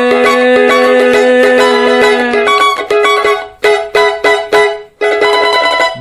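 Rozini cavaquinho strummed in a fast pagode rhythm, breaking into a few separate chords with short gaps in the second half as the song ends.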